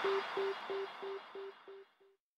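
Outro of an electronic trance mashup fading out. A short, mid-pitched synth blip repeats about three times a second over a hiss of fading reverb, growing fainter until it dies away near the end.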